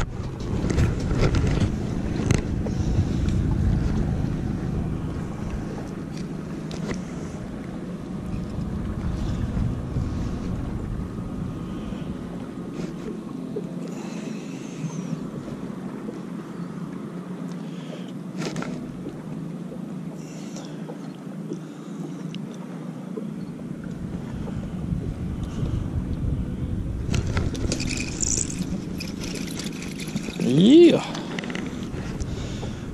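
Steady low rumble with a faint hum and wind on the microphone of a camera worn aboard a small fishing boat, with a few sharp clicks of tackle being handled. The deepest rumble eases off for several seconds in the middle.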